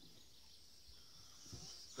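Near silence, with a faint steady high-pitched drone of insects.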